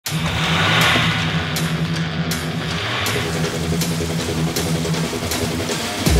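Film soundtrack: a car engine revving, loudest in the first three seconds and then fading back, over music with a low, pulsing bass line.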